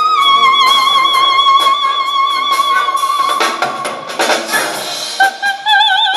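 Operatic soprano, amplified, holding one long high note with vibrato over a symphony orchestra. The note ends about four seconds in, the orchestra plays on briefly, and she comes back in with a new vibrato note near the end.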